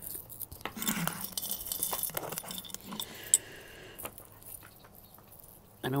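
Costume jewelry jangling and clinking as a hand rummages through a jar of chains, beads and metal pieces, with one sharp click about three seconds in; the handling grows quieter toward the end.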